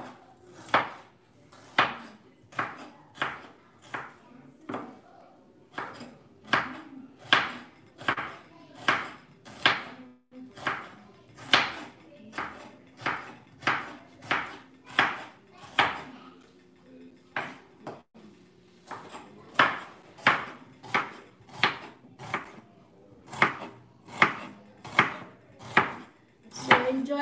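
Chef's knife slicing onions on a wooden cutting board: a steady run of sharp cuts, the blade knocking the board about one to two times a second, with a few short pauses.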